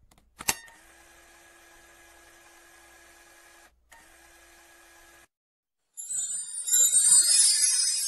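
Sound effects of an animated logo intro: a sharp click about half a second in, then a faint steady hum, then from about six seconds a loud, high, glittering shimmer of jingling chime sounds.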